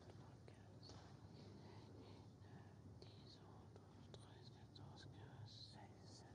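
Near silence: hushed room tone with a faint low hum, soft scattered whispers and a few faint ticks.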